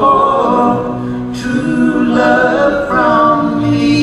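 Three male voices singing close harmony in long held notes, the chord changing a few times.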